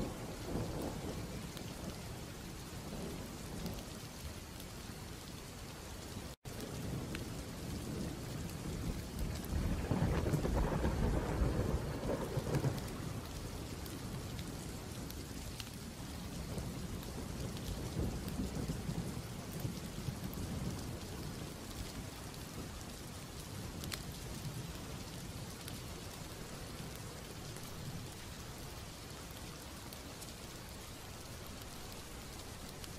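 Steady rain with rolling thunder that swells about ten seconds in and dies away. The sound briefly cuts out for an instant about six seconds in.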